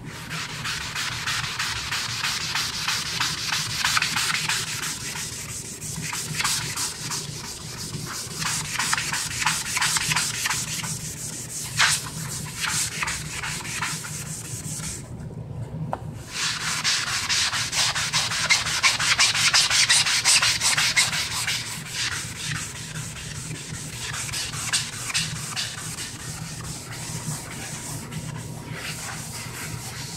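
Magic Eraser melamine foam sponge rubbed back and forth on a wood-grain desktop, a dry scrubbing sound as it wipes off oily grime. It stops for about a second halfway through, then starts again.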